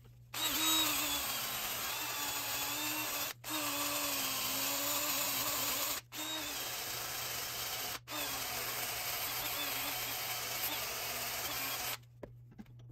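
Power tool spinning a steel wire wheel brush against a cast copper bar clamped in a vise, scrubbing the oxide off its surface: a steady motor whine over a loud scratchy hiss. It starts about a third of a second in and breaks off briefly three times, around 3.5, 6 and 8 seconds.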